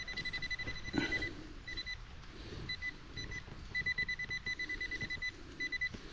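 Handheld metal-detecting pinpointer beeping a single high tone in quick pulses, cutting out and starting again, as it senses a metal target in the freshly dug hole. A soft knock comes about a second in.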